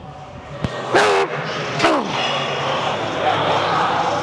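Two loud, wordless strained yells, about a second apart, from a man grinding through a heavy rep on a plate-loaded leg machine, with a sharp knock just before the first.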